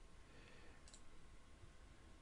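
Near silence: room tone, with one faint computer-mouse click about a second in.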